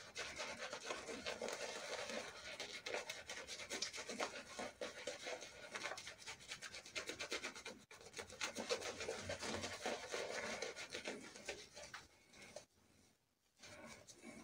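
Synthetic shaving brush scrubbing shaving-cream lather on facial skin in fast, continuous strokes. There is a brief break about eight seconds in, and the brushing stops about twelve seconds in.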